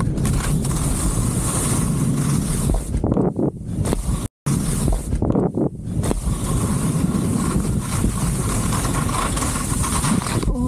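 Skis running fast over slushy spring snow, with wind buffeting the action camera's microphone: a loud, continuous rushing noise with a heavy low rumble. The sound drops out completely for an instant a little past four seconds in.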